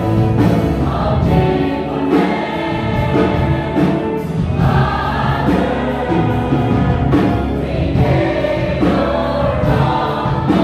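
Large choir of men, women and children singing a gospel worship song together.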